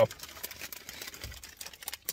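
Foil-lined plastic chip bags crinkling as they are handled, a rapid, irregular run of small crackles.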